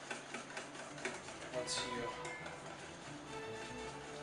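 Wire whisk ticking rapidly against a stainless-steel bowl as melted butter is whisked into egg yolks to emulsify a hollandaise, over quiet background music.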